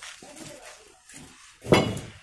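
A metal tool striking with a sharp clink near the end, one of a steady run of strikes a little under a second apart. Fainter knocks and scrapes come in between.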